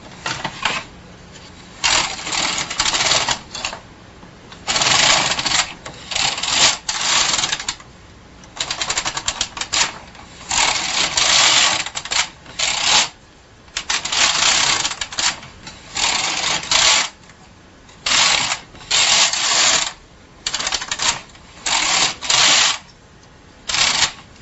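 Carriage of a Bond hand knitting machine pushed back and forth across the needle bed, knitting rows: about ten passes, each a second or two of clicking clatter from the needles, with short pauses between.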